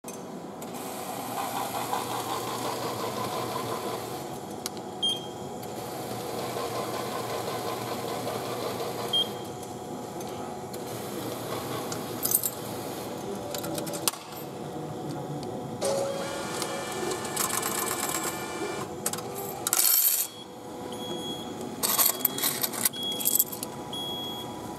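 JR ticket vending machine in use: coins dropped one by one into the coin slot with separate clicks, then the machine's mechanism whirs steadily for a few seconds while it prints and issues the ticket. A loud burst near the end is followed by a rattle of clatters as the ticket and change come out.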